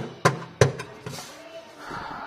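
A hand tapping on the Honda NSX's bare sheet-metal boot floor: three sharp knocks within the first second.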